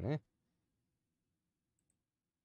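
A man's voice trailing off right at the start, then near silence with one faint, brief click near the end.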